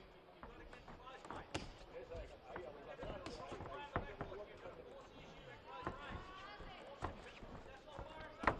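Boxing ring sounds: scattered sharp thuds and knocks from boxers' footwork on the canvas and gloves, irregularly spaced, over voices calling out in the arena.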